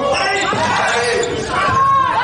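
Gym game sounds: spectators shouting and cheering over a basketball bouncing on the hardwood court, with a sustained shout or cheer in the second half.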